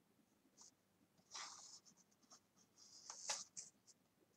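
Faint rustling and scratching of hands handling wool yarn and a tape measure on a tabletop, in two short bursts about a second in and about three seconds in, the second ending in a small sharp click.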